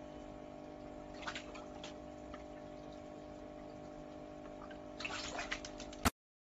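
Water splashing in a small fish tank: a short splash about a second in and a quick flurry of splashes near the end. Under it runs a steady low hum with several fixed tones.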